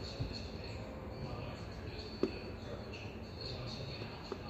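Quiet mouth noises of a chewed Listerine Ready Tab being swished with the lips closed, with two short wet clicks, one about a quarter second in and one just past two seconds, over low room noise.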